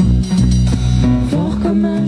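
Live band playing an instrumental passage: strummed acoustic guitar with electric guitar, bass guitar and drums, no singing.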